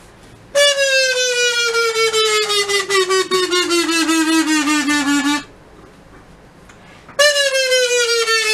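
A long, buzzy horn-like note slides slowly down in pitch for about five seconds, then stops. After a short gap, the same falling note starts again near the end.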